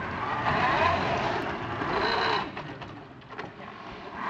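Competition robot's electric drive motors whining as it drives, the pitch rising and falling as it speeds up and slows. The whine drops away after about two and a half seconds, leaving a quieter stretch with faint clicks.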